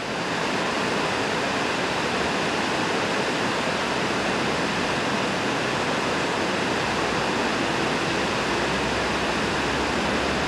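Steady, even rushing noise with no distinct events: outdoor ambience of running water or wind kind.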